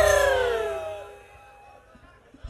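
Live campursari band music breaking off. A last loud struck note slides down in pitch and fades away over about a second, leaving a short lull.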